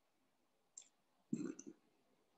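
Mostly near silence, broken by two brief faint clicks: a short one just under a second in and a slightly longer one about a second and a half in. These are the mouth or lip clicks of a speaker between phrases.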